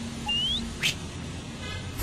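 A single short rising chirp, followed a moment later by a brief upward swish, over a faint steady outdoor background.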